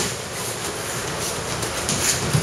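Steady background noise with faint, light taps and shuffles from boxing gloves and feet during light mass sparring in a ring.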